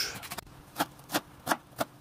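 Large knife slicing through a half cabbage and striking a wooden cutting board: four sharp knocks at a steady pace of about three a second.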